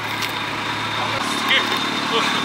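Vehicle engine idling steadily, with a low hum that cuts off a little over a second in.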